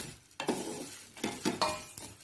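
Whole spices (coriander seeds, cumin, cardamom pods and cinnamon sticks) being dry-roasted and stirred in an aluminium pan with a wooden spatula: a dry rattling scrape of seeds on metal, in several separate strokes.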